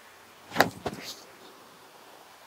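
A few sharp knocks and scuffs about half a second to a second in, from a disc golf drive being thrown off the tee pad.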